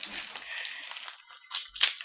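Foil wrapper of a Match Attax trading-card pack crinkling and tearing as it is opened, with two sharper crackles near the end.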